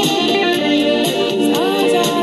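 Epiphone semi-hollow electric guitar played along with a backing track that carries a singing voice. There are a few short sliding notes near the end.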